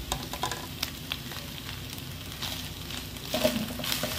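Shredded chicken with grated mozzarella sizzling in a nonstick frying pan while a wooden spatula stirs and scrapes it, with scattered light clicks of the spatula against the pan.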